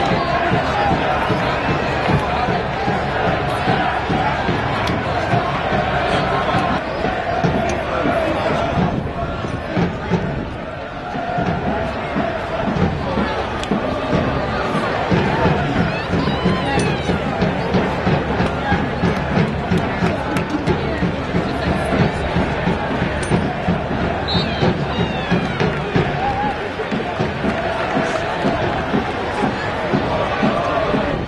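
Soccer supporters' section chanting together in a sung, sustained chant. From about twelve seconds in, a steady beat of roughly two beats a second runs under it.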